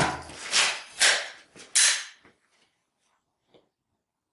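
Handling noise as a pistol is picked up and raised to aim: a knock, then three short rustles of movement, and a faint click near the end.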